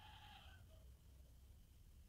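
Near silence: room tone, with a faint, high-pitched drawn-out call in the background that fades out about half a second in.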